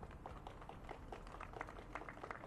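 Faint, scattered applause from a few people, with uneven sharp claps several times a second.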